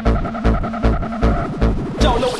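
Makina electronic dance track: a steady kick drum beat under a held synth tone, with no vocals.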